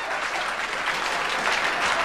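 Audience applauding steadily, many hands clapping at once, in response to a comedian's punchline.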